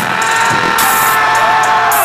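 Loud live metalcore music from a band playing through a concert PA, heard from within the crowd. Held and gliding pitched notes run under a steady beat.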